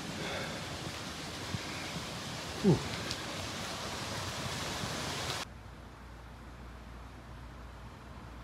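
Steady outdoor background hiss, broken by a short 'ooh' a little under three seconds in. About five seconds in it cuts off suddenly to a quieter, steady low hum.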